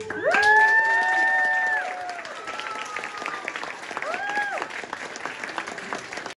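Audience applauding after a children's song ends, with several people whooping in long held cheers at the start and one short whoop about four seconds in.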